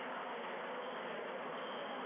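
Steady, even background hiss with no ball strikes or footsteps.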